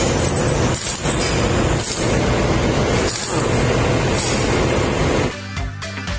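Loud, steady machinery noise of a ship's engine room, heard over background music, cutting off suddenly near the end.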